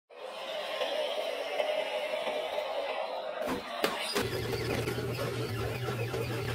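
Small electric motor and gears of a radio-controlled scale truck whining steadily as it crawls up a dirt slope. A few sharp knocks come about halfway through, after which a steady low hum takes over.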